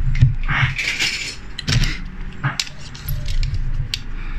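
Small die-cast metal toy cars clinking and rattling against one another as a hand rummages through a pile of them, with a few sharp clicks.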